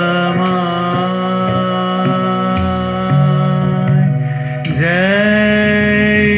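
A man sings a devotional hymn with keyboard accompaniment, holding long notes. About four and a half seconds in, his voice slides up into a new held note.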